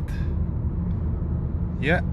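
Cabin noise of a BMW E90 3 Series driving: a steady low rumble of road and engine noise.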